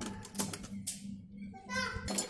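Domestic sewing machine running and stitching steadily, with a regular mechanical beat of about four a second, as it sews cords onto fabric.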